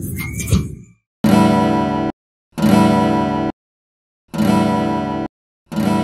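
An acoustic guitar chord strummed and left to ring, four times, each about a second long and cut off abruptly into dead silence. A short stretch of background music ends about a second in.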